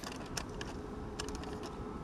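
Outdoor background noise: a steady low rumble with scattered faint short ticks.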